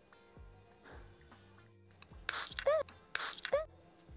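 Two half-second bursts of hiss from a Zozu dry shampoo aerosol can being sprayed, about a second apart, in the second half, each ending with a brief rising-and-falling tone. Background music with a steady beat plays underneath.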